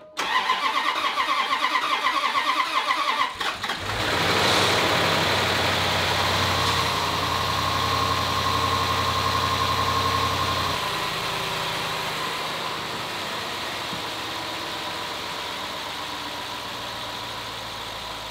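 Range Rover V8 cranking on the starter for about three seconds, then catching and running at a fast idle that drops to a lower, steady idle about seven seconds later. It is the first start after a timing chain repair, and the engine runs like a normal engine.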